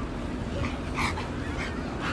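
Pit bull-type dog giving short, high whimpers while playing with another dog on leash, the clearest about a second in.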